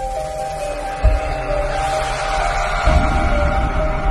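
Background music: a slow melody of held tones over a low beat that thumps about every two seconds.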